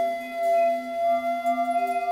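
Improvised ensemble music: a long, steady flute note held over lower sustained tones that shift in pitch.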